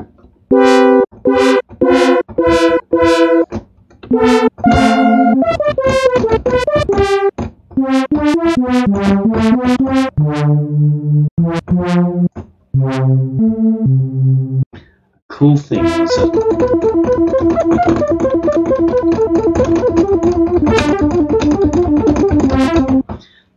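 Arturia CZ V phase-distortion synth, an emulation of the Casio CZ, playing a brass-style patch: short staccato chords whose bright attack quickly mellows as the DCW envelope closes, then a few lower notes, then from about two-thirds through a held chord that pulses rapidly.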